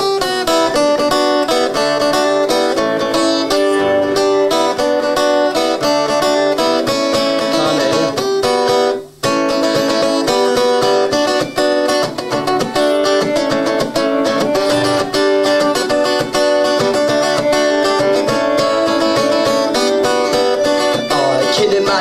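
Acoustic guitar playing the instrumental opening of a song live, with no singing, and a brief break about nine seconds in.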